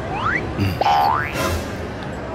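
A comic cartoon sound effect, two quick rising whistle-like glides one after the other, over background music.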